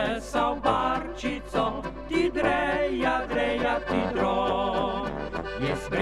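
Slovenian Oberkrainer-style folk band playing an instrumental passage, the accordion leading with clarinet and trumpet over a brass bass and guitar accompaniment.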